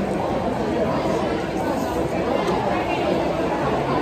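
Steady background chatter of many people talking at once in a busy food court, no single voice standing out.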